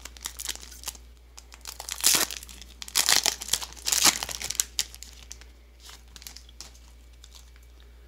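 Foil Digimon Card Game booster pack crinkling as it is handled and torn open, the loudest crackling in the first half, then quieter rustling.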